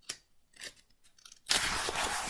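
A picture-book page being turned by hand: a short rustling swish of paper, starting about one and a half seconds in.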